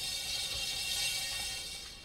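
Paint spinner turntable whirring with a fine rattling as it spins a canvas, slowing and fading near the end as it comes to a stop.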